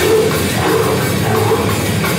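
Heavy metal band playing live: heavily distorted electric guitar over a pounding drum kit, loud and dense throughout.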